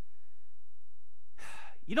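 A man's audible breath, short, about a second and a half in, after a pause with only a low hum; speech starts right at the end.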